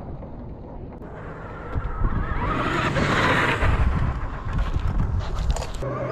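Wind buffeting the microphone as a low rumble that swells about two seconds in.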